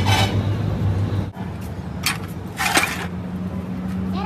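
Steady low hum of a vehicle engine running, with a sharp click about two seconds in and a louder short scrape just after it.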